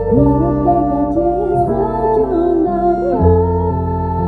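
A woman singing a slow, wavering ballad melody into a microphone over sustained backing chords and a steady bass, the chords changing every second or so.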